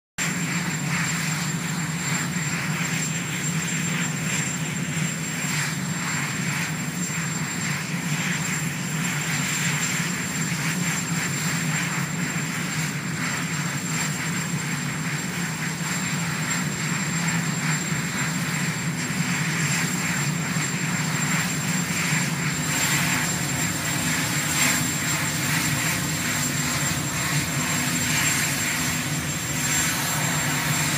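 Marine One, a Sikorsky VH-3D helicopter, running on the ground with its turbines at idle: a steady low hum under a rushing whine, with a thin high whistle held throughout.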